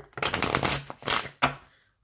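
Tarot cards from the Crystal Visions deck being shuffled by hand: a quick run of papery card slaps and riffles that fades out about a second and a half in.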